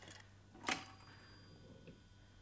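The ring of an old cradle telephone's bell dies away, then about 0.7 s in a single sharp click as the handset is lifted off its cradle to answer.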